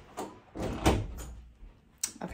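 Interior panel door pushed shut, a short click followed by a thud as it closes a little under a second in.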